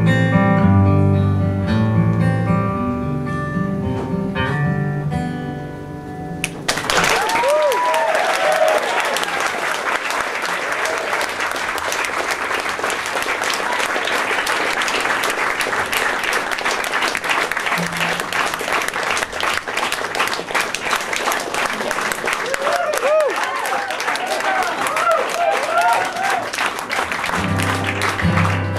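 Acoustic guitar picking the last bars of a song, then about seven seconds in an audience bursts into applause with whistles and cheers that goes on for some twenty seconds. Near the end the applause dies away and the guitar starts again.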